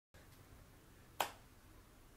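A single sharp click, like a finger snap, about a second in, over faint room tone.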